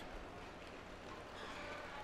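Faint arena room noise: an even low background hiss with a steady low hum.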